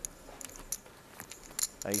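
Faint clicking of poker chips being handled at the table: a few sharp, separate clicks over a low background.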